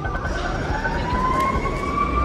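Emergency vehicle siren wailing, its pitch gliding slowly upward and then holding high, over the steady noise of street traffic.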